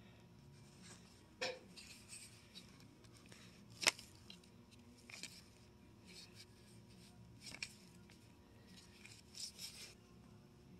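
Cardboard LP record jackets being flipped through in a bin: faint rubbing and sliding of sleeves against each other, with a handful of sharper clicks and knocks, the sharpest a little before the middle.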